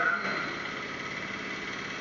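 A steady mechanical hum, like an engine running at idle, holding an even level, with a voice trailing off at the very start.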